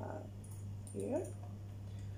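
A woman's brief hesitation sounds between sentences: a short murmur, then a short rising vocal sound about a second in, over a steady low electrical hum.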